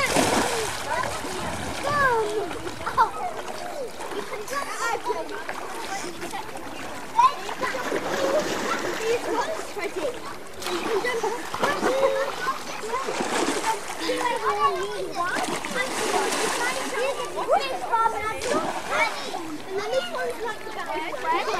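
Water splashing in a swimming pool as people swim and wade, with children's voices calling out and chattering throughout.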